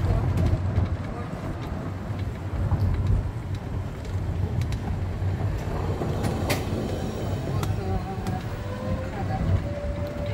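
Resort buggy riding along a road: a low rumble from the cart and its tyres, with rattles and clicks from the body, and a faint whine that rises slowly in pitch over the last few seconds.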